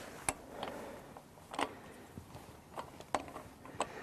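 Faint, scattered metallic clicks, about five in four seconds, irregularly spaced: a hand tool and the crank bolt being handled at a bicycle's crank arm as the bolt is undone.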